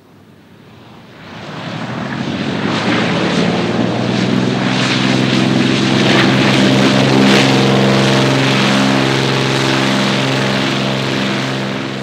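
A de Havilland Canada DHC-4 Caribou's two Pratt & Whitney R-2000 radial piston engines and propellers during touchdown and landing roll. The engine and propeller noise is faint at first, grows loud between one and two seconds in, and stays loud and steady.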